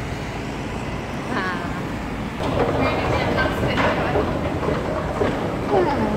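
Steady urban background noise of street traffic and then a metro station, getting louder about two and a half seconds in, with scattered voices over it.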